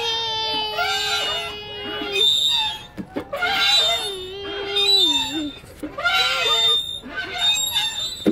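A young child's voice making long, held vowel sounds on a steady pitch: three of them, the first two about two seconds each and the last shorter.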